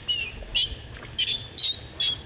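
Baby long-tailed macaque giving a run of short, high-pitched squeals, about five in two seconds, the distress calls of an infant being roughly handled by an adult.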